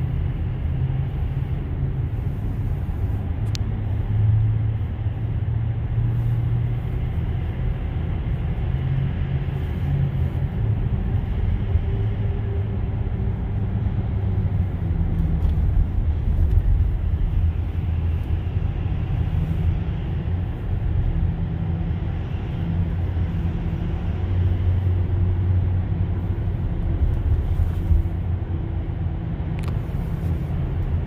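Steady low rumble of tyre and road noise heard inside the cabin of a Tesla electric car driving through a road tunnel.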